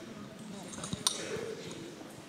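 Low murmur of an audience chatting in a hall while waiting, with one sharp click about a second in.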